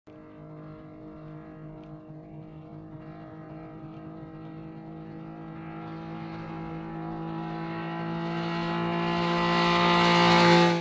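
Triumph Speed Triple 1200 RS's three-cylinder engine running at steady high revs on track, its note holding one pitch while growing steadily louder as the bike approaches.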